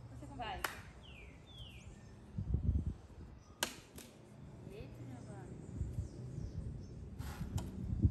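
A hard puff of breath blown at playing cards stacked on a bottle, heard as a short low rush about two and a half seconds in, with a few sharp clicks around it. Wind rumbles on the microphone throughout.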